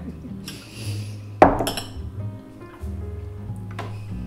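Background music with steady low notes, and a metal spoon clinking sharply against a glass dish about a second and a half in, with a fainter click near the end.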